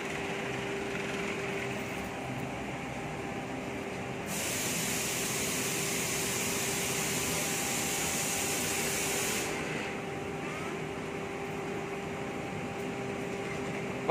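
Water rushing out of a water filter's purge line during a flush, over a steady hum. From about four seconds in to about nine and a half seconds a louder hissing spray joins it, then drops back.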